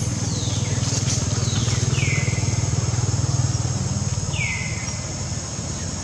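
A motor vehicle's engine drone that swells to a peak around the middle and then eases off, as of a vehicle passing. A bird gives a short curved chirp twice, about two and a half seconds apart.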